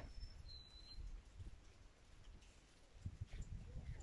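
Faint outdoor ambience: low wind rumble on the microphone, with a brief high chirp about half a second in.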